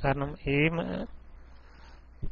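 A person's voice over a voice-chat room's audio stream for about the first second, then a pause holding only faint hiss and a steady low hum.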